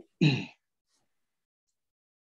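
A person's brief vocal sound, a short falling grunt-like voicing about a quarter second in; the rest is near silence.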